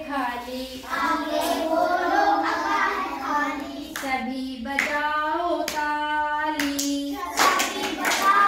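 Children singing a Hindi alphabet song (varnamala geet) in a sing-song chant, with hand claps along the way, the loudest near the end.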